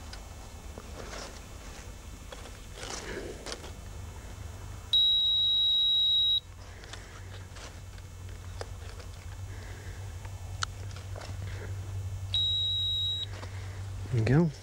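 Electronic bite alarm sounding two steady high-pitched tones, one about a second and a half long about five seconds in and a shorter one near the end, as the rod is handled on its rest. Light rustling and clicks lie underneath.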